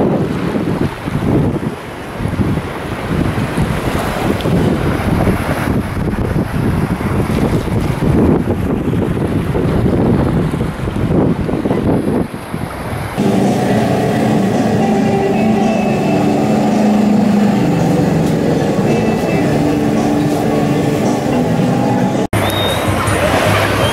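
Wind buffeting the microphone at the edge of shallow sea water, a loud, gusty rumble. About 13 seconds in it cuts abruptly to a steadier sound with several held low tones.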